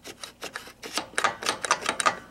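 Pinball flipper on a 1965 Gottlieb Bank-a-Ball, moved back and forth by hand, scraping and clicking against the wooden playfield in a quick irregular series. The flipper sits too low and drags the playfield, a bushing problem: the bushings are shot or misadjusted, or the flipper mechs hang down from the playfield.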